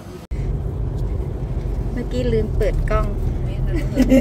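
Steady low road rumble inside a moving car's cabin. It comes in abruptly a moment after a quieter indoor hum, and people's voices join about two seconds in.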